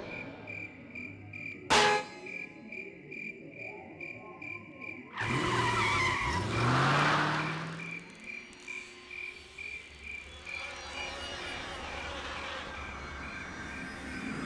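Crickets chirping steadily, about two chirps a second, with a sharp click near the start. Around the middle a car goes by for a few seconds, its engine note rising over tyre noise.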